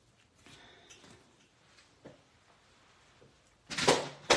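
Cardstock being handled on a craft mat, with faint paper rustles and a light tick, then a short loud knock near the end as the paper trimmer is moved aside.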